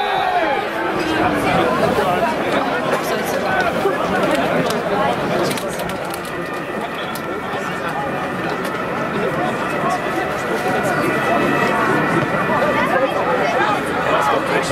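Indistinct chatter of several people talking and calling out at once at a football match, a steady babble of overlapping voices with no clear words.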